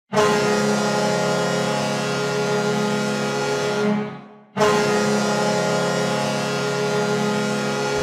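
Ice hockey arena goal horn sounding two long blasts. Each is a steady, loud chord of several tones. The first fades out about four seconds in, and the second starts half a second later.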